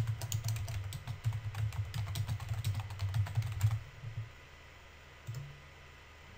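Typing on a computer keyboard: a quick, irregular run of keystrokes for nearly four seconds, then it stops.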